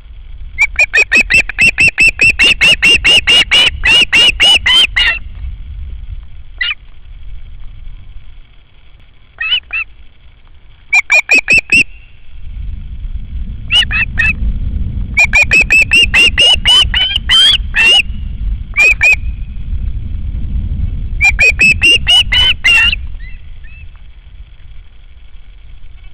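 Juvenile osprey calling in loud bouts of rapid, shrill whistled notes, about four or five a second, with a few short pauses and single calls between the bouts. A low rumble runs underneath through the middle stretch.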